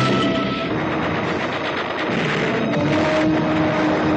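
Film action sound effects: rapid gunfire and blasts from crashes and explosions, mixed with an orchestral score.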